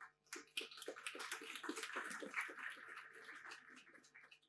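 Audience applauding faintly, the clapping thinning out and dying away near the end.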